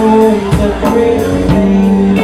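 Live soul-funk band playing: a woman singing over electric bass, guitar and a drum kit, with drum hits about every half second.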